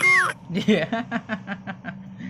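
A short, loud, high-pitched cry that slides down in pitch, followed by a run of rapid laughter.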